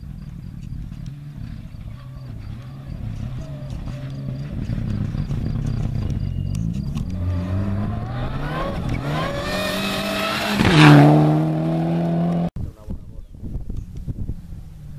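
Mitsubishi Lancer Evolution rally car on a gravel stage, its engine rising and falling in pitch through the gears as it approaches, loudest with a rush of noise as it passes close about eleven seconds in. After a sudden cut, a second rally car's engine is heard fainter as it approaches.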